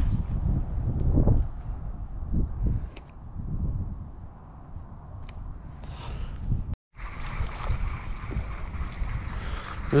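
Wind rumbling on the microphone, with light handling knocks and rustles. The sound cuts out completely for a moment about two-thirds of the way through.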